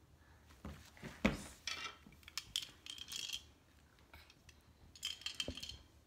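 Small plastic dress-up accessories, a bead necklace and sunglasses, being handled and knocked together, giving light clicking and clinking with a sharper knock about a second in.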